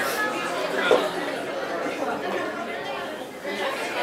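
Background chatter of many voices in a busy restaurant, with a short laugh at the start.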